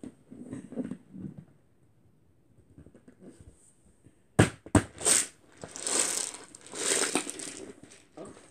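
Handling noise from a large plastic storage container on a carpet. There are two sharp knocks about four and a half seconds in, then a few seconds of rustling and scuffing.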